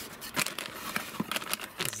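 A cardboard box and the plastic bag inside it rustling and crinkling as the packaging is handled, with several short sharp crackles.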